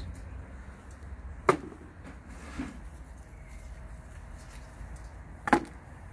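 Two sharp snips about four seconds apart from hand pruning shears cutting grape-bunch stems off the vine.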